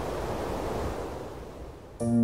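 A steady rushing noise like wind or surf, an ambient sound effect, that fades away over the last half second.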